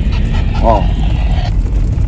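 Steady low rumble of a vehicle driving, with a short spoken "oh" about half a second in.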